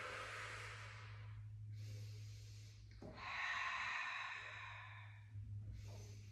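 A woman's audible breathing through a slow Pilates leg-lowering: a breath at the start, a fainter one about two seconds in, and a long exhale about three seconds in, the loudest sound here, as the legs lower. A low steady hum runs underneath.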